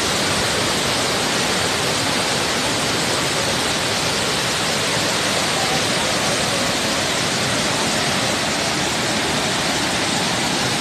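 Iguazu Falls' water rushing down, heard as a loud, steady, even wash of noise with no change.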